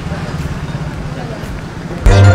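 Passenger van's engine idling close by: a steady low rumble with a fast, even pulse.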